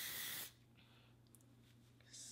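A burst of hair spray hissing out of the nozzle, which cuts off about half a second in.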